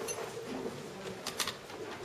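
Audience rising from their seats: faint shuffling with a few light knocks about one and a half seconds in.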